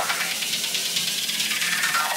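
Electronic dance music at a breakdown: the kick drum and bass cut out, leaving a rushing noise sweep and thin high synth tones.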